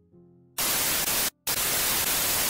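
TV static sound effect: loud white-noise hiss starting about half a second in, cutting out for a moment, then hissing again.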